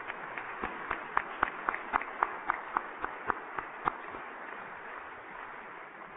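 A congregation applauding. One nearby pair of hands claps sharply and evenly, about three or four times a second, over the general applause. The clapping stops about four seconds in and the applause dies away.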